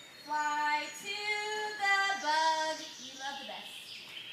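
Children and a woman singing a short tune together, a handful of held notes that step up and down.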